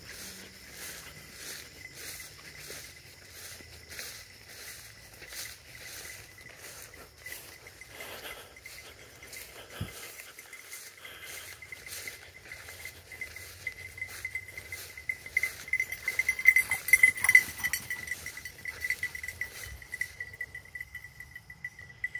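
Footsteps swishing through wet, tall grass, with a steady high-pitched tone underneath that swells louder about two-thirds of the way through and then eases off.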